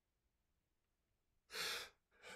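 Near silence, then about a second and a half in, one short, sharp breath from a man through his open mouth, part of an acted expression of grief.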